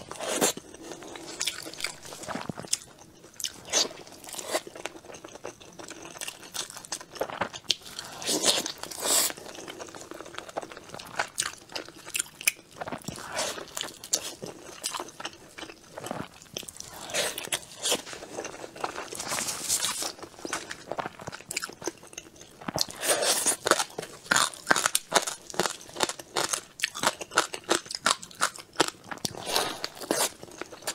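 Close-miked biting and chewing of a large dumpling with minced-meat filling: wet, crackly mouth sounds in an irregular run, busiest near the end.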